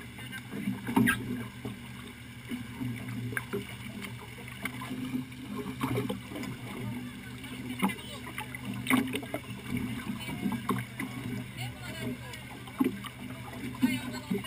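A boat's engine running steadily with a low hum. Occasional short knocks and clicks sound close to the microphone.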